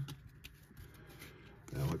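A few faint, short flicks and slides of paper baseball trading cards, as cards are moved one by one through a stack held in the hand.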